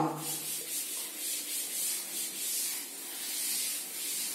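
Chalkboard duster wiped across a chalkboard to erase chalk writing: a scrubbing hiss that swells and fades with each back-and-forth stroke.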